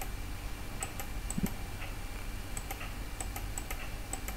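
Faint, irregular clicks of a computer mouse, about a dozen light ticks spread unevenly, over a low steady hum.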